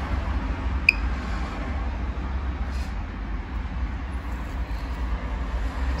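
A handheld Geiger counter gives a single short, high beep about a second in, over a steady low rumble of background noise.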